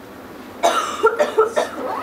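A person coughing, a run of several coughs starting just over half a second in.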